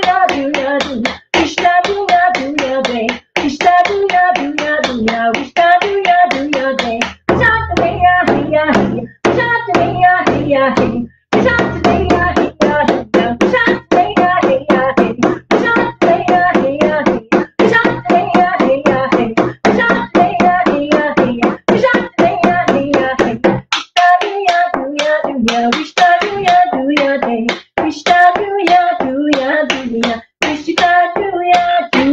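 A woman singing a traditional Indigenous song over a steady, fast hand-drum beat.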